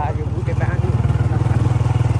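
Motorcycle engine running steadily while riding, a low even drone with a fast regular pulse.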